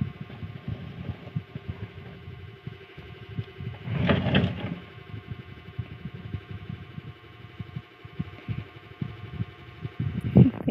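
Irregular low thumps and rubbing of a handheld phone being moved close to its microphone, over a faint steady hum, with one louder short burst of noise about four seconds in.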